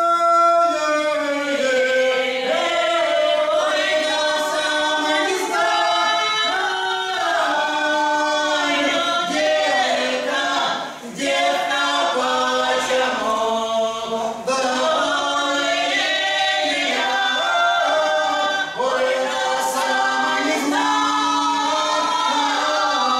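Russian folk song sung a cappella by a small mixed ensemble of three women and a man, the voices in harmony on long held notes. The singing breaks briefly about 11 seconds in, then carries on.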